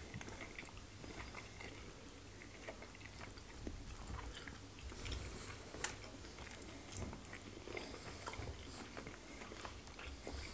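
Faint, close-miked chewing and wet mouth sounds of people eating fufu and pepper soup by hand, with scattered soft smacks and clicks.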